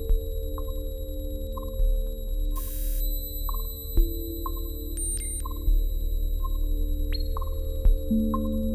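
Live electronic music: a sustained low drone with held tones, short ping-like blips recurring about once a second, and a sharp low hit every four seconds or so.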